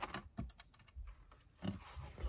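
Light clicks and taps of a cardboard file folder being turned over and set down on a cutting mat, and metal paper clips being pushed onto its edge; about five separate small clicks.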